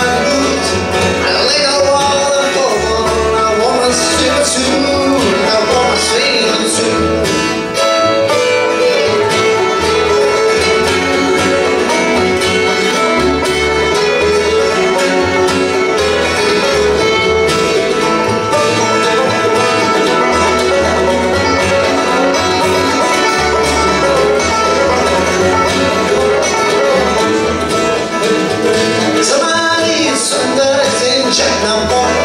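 A bluegrass band playing live: five-string banjo, fiddle, mandolin, acoustic guitar and upright bass, at a steady level.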